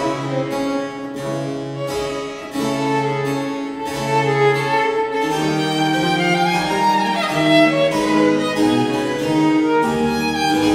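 A Baroque violin sonata: a solo violin plays a melody over a harpsichord basso continuo, with the bass line moving in even steps. The violin line comes forward more strongly about halfway through.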